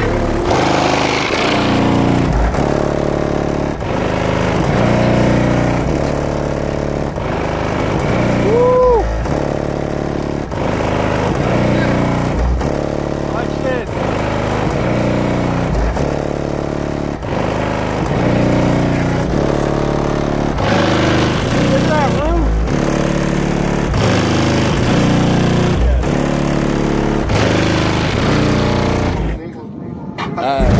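Bass-heavy music with vocals played loud through a car stereo's four Sundown Audio HDC3 18-inch subwoofers, heard from outside the vehicle. The deep bass notes change in steps every second or so.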